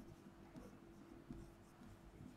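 Very faint stylus strokes on an interactive display as a short label is written, a few soft ticks and scratches over a faint steady hum; otherwise near silence.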